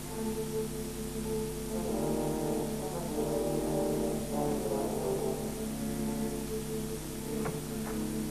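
Orchestral film score of sustained low brass chords, with the upper notes shifting over the middle part, heard through a worn VHS recording.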